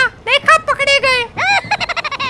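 High-pitched, pitched-up cartoon character voice: quick unintelligible syllables, then an arching cry about one and a half seconds in and a long falling wail starting near the end.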